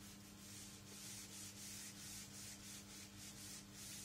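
Whiteboard eraser wiping a whiteboard, a faint run of quick back-and-forth rubbing strokes, about three a second, growing stronger after the first second.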